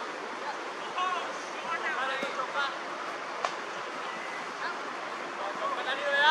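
Steady outdoor hiss on a cricket field, with short high shouted calls from players about one and two seconds in, and a single sharp knock about three and a half seconds in.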